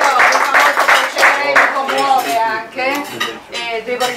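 A roomful of dinner guests applauding, the clapping thinning out about halfway through as a woman's voice starts speaking over it.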